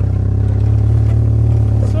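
Off-road buggy engine running under heavy throttle as the buggy pulls away, heard as a steady low drone.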